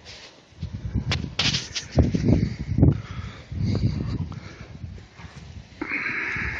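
Strong gusty wind buffeting the microphone in uneven low rumbling gusts, with leaves rustling and a few short crackles between about one and two seconds in.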